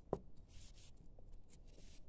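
Faint rustling and rubbing of thin wire leads being twisted together by hand, with one short knock just after the start.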